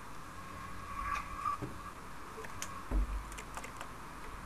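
Scattered clicks of computer keyboard keys being pressed, over a faint steady hum, with a dull low thump about three seconds in.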